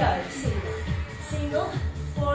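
Upbeat pop music for a workout, with a steady beat and a voice over it.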